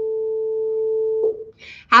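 A woman's voice holding one steady hummed note, a drawn-out "mmm", that breaks off about a second and a quarter in. A short breath follows, then the next word begins.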